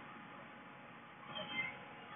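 One brief, faint high-pitched call, like a meow, about a second and a half in, over quiet room tone.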